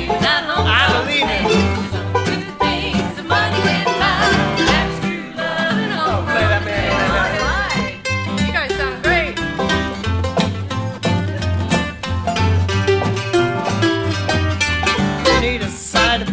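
Instrumental break from a live acoustic string band in a bluegrass style: banjo, acoustic guitar, mandolin and upright bass playing together, with the bass keeping a steady pulse underneath.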